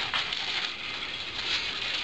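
Cucumber leaves and vines rustling and crackling as a hand moves through the plants.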